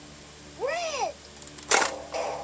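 A short meow-like call, rising then falling in pitch, about half a second in, then a single sharp plastic clack near the end from the LeapFrog Color Mixer Truck toy's drum door being worked by hand.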